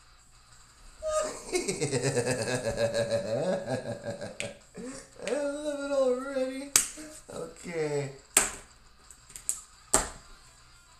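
A man's wordless vocalizing: a long buzzing tone from about a second in, then wavering hummed or sung sounds, broken by three sharp clicks near the seven-second mark, about a second and a half later, and at the end.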